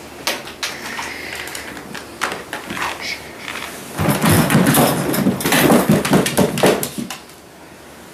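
A plastic pet carrier clattering and scraping as it is handled, with quick clicks and rattles from its wire grate door. The clatter becomes a dense, loud burst lasting about three seconds from about halfway through.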